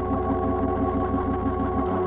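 Sustained organ and synthesizer chord with a fast pulsing throb in its low notes. Near the end it switches abruptly to a different held keyboard chord, the change from one album track into the next.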